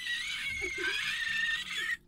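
A high-pitched squeal, held for about two and a half seconds and wavering slightly in pitch, that cuts off suddenly at the end. It is a home-made Foley sound effect.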